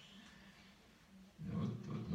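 Quiet room tone, then a man's low-pitched voice starts loudly about a second and a half in.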